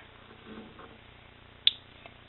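A single sharp click about three-quarters of the way through, as the LEDs of a homemade arc reactor prop are switched off.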